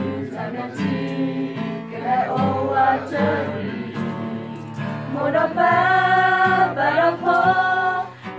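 A mixed group of men and women singing a Karen song together, with long held notes; the voices grow louder about five seconds in.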